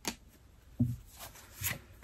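Tarot cards being handled: about four short taps and slides as cards are laid down on a table and drawn from the deck.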